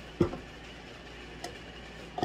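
Quiet room tone with the stand mixer switched off, broken by a short knock about a fifth of a second in and a faint tick about a second and a half in, typical of handling the mixer's raised whisk and bowl.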